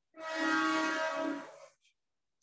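A horn sounding one steady, unwavering note for about a second and a half, then fading out.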